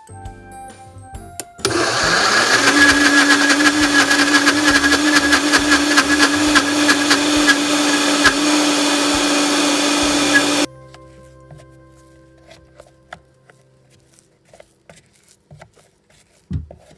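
Vitamix blender motor spinning up over about a second and then running steadily for about nine seconds as it blends a dry flour mix, before cutting off suddenly. Soft background music is heard before and after it.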